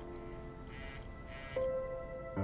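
Soft background music of sustained held notes, with a brighter, louder note coming in near the end.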